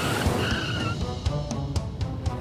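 Cartoon sound effect of a small plane skidding to a stop on a runway, with a brief high tire screech, over background music with a steady beat.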